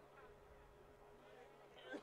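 Near silence: a faint steady hum with faint distant murmuring, and a brief faint sound near the end.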